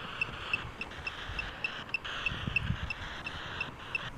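A high-pitched pip repeating evenly about three times a second over a steady hiss, with a few low bumps in the middle.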